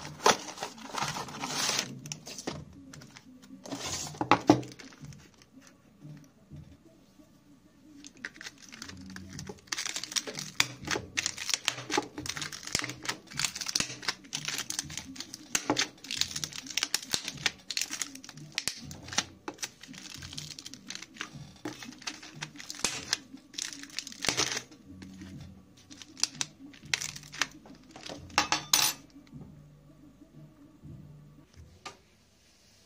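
A cardboard ready-meal box being opened and handled, with a few louder rustles and tears early on. Then a fork repeatedly jabs through the plastic film sealing the meal tray, a long run of quick crackling clicks.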